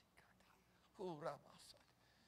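Mostly near silence, broken about a second in by a short, quiet, falling-pitch vocal sound from a man's voice, followed by a brief breathy hiss.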